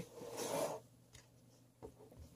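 A cardboard trading-card box being picked up and handled, a brief rub or scrape of about half a second, followed by a faint tick near the end.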